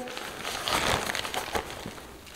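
Fabric rustling of a backpack's lining as hands reach into its inside zipper pocket, with a few faint clicks; the rustle swells about a second in.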